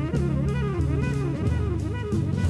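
Live jazz trio of tenor saxophone, guitar and drum kit playing together: repeating rising-and-falling lines over steady low notes, with frequent cymbal strokes.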